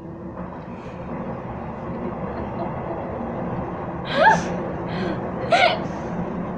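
A train passing by: a steady noise that builds a little over the first couple of seconds and then holds. Two short voice sounds break over it, about four and five and a half seconds in.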